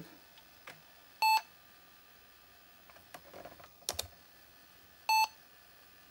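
Two short, loud electronic beeps from the Toshiba T2100CT laptop, about a second in and again about four seconds later, with a few faint clicks from the floppy drive between them. The drive is failing to boot from the install disk, giving a 'Non-System disk or disk error'.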